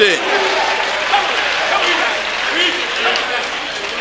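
A congregation applauding steadily, with a few voices calling out faintly over the clapping.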